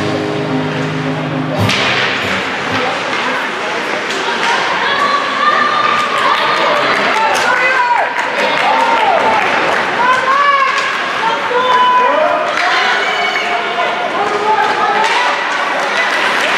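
Ice hockey play in an indoor rink: scattered sharp clacks and thuds of sticks and puck, some against the boards, under the calls and shouts of players and spectators. Arena music stops about two seconds in.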